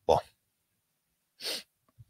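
A single short, forceful breath from a person's nose or mouth, about one and a half seconds in, much quieter than the talk around it.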